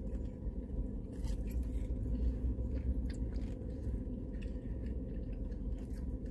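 A person chewing a bite of crispy fried chicken wing with a few faint crunches, over a steady low hum inside a car cabin.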